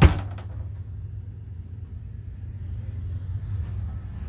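A wooden RV wardrobe door shutting with one sharp knock at the start, followed by a low steady hum.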